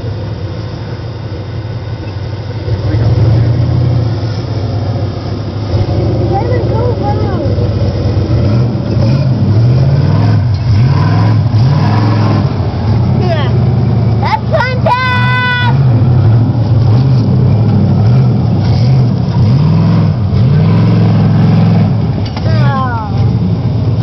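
Mud-bogging pickup truck's engine revving hard and repeatedly as it churns through a mud pit, getting louder a few seconds in. A brief high steady tone sounds about fifteen seconds in.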